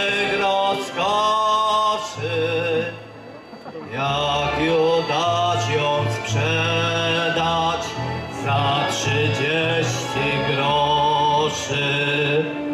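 A man singing a song into a microphone, accompanied by a small live instrumental ensemble with violins and a steady low bass line. The music dips briefly about three seconds in, then carries on.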